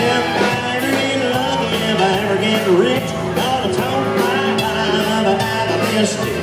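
Live country band playing: fiddle, electric and acoustic guitars, bass and drums, with a sliding lead melody line over a steady beat. No lyric is heard in these seconds, so it is likely an instrumental break.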